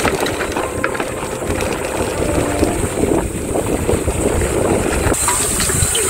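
Mountain bike descending a dirt forest singletrack: tyres rolling over dirt and roots, with the bike rattling steadily and many small knocks.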